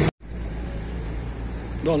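Steady background noise of road traffic, with a low rumble, after an abrupt edit cut at the very start; a man's voice comes in near the end.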